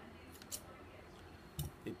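Scissors snipping through date palm leaf strips, trimming off the excess: two short, sharp snips about half a second in, then a couple more short clicks near the end.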